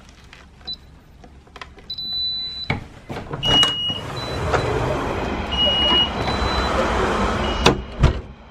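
Burglar alarm keypad beeping as its buttons are pressed, then the alarm's exit-delay beeps sounding about every two seconds. The front door clunks open, letting in a loud steady rush of outdoor noise, and knocks again near the end as it is pulled shut.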